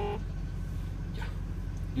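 Steady low rumble of a running car, heard inside its cabin.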